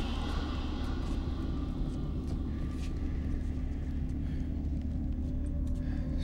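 Steady low rumbling hum of a sci-fi spaceship interior ambience, even throughout, with a few faint clicks.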